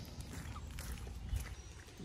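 Faint footsteps on grass, with a low rumble on the microphone and one soft thump a little past halfway.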